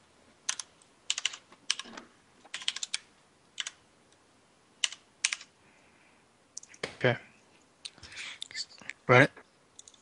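Computer keyboard keystrokes, typed in short clusters over the first five seconds or so.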